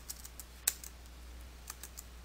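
Faint keystrokes on a computer keyboard: a few scattered clicks, with one sharper click about two-thirds of a second in.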